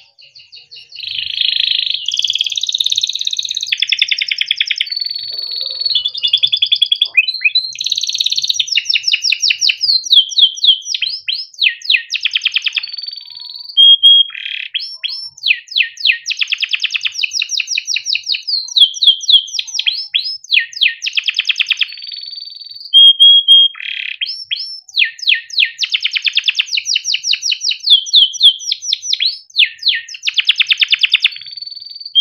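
Yellow domestic canary singing a long, continuous song that starts about a second in: phrase after phrase of fast trills and rolls, each a rapid run of repeated notes, with a few short held whistled notes between phrases.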